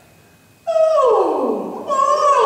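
A men's choir sliding their voices together from high down to low in a vocal warm-up glide, starting about half a second in and falling over about a second; a second downward slide begins near the end.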